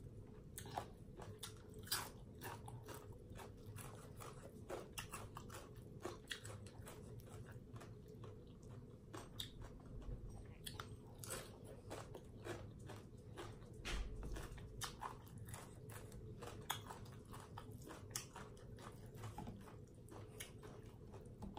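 A person chewing and biting crunchy raw cabbage and green papaya salad: a run of irregular crisp crunches and mouth clicks.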